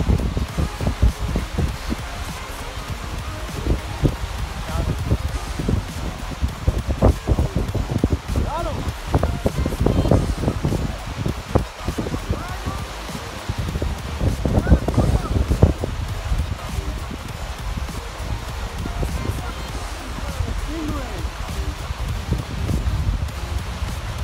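Gusting wind buffeting the microphone in a strong, uneven rumble, over small waves washing onto a shell beach.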